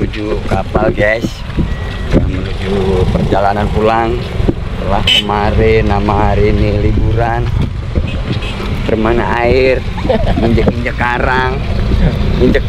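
People talking, over a steady low rumble.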